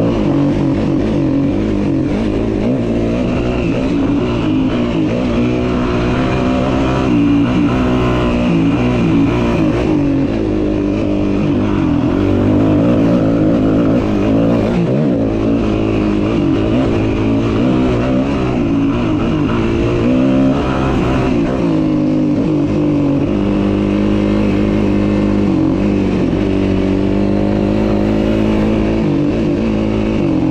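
Yamaha WR250F four-stroke single-cylinder dirt-bike engine under way on a trail, its revs repeatedly rising and falling, steadier for a few seconds after the middle.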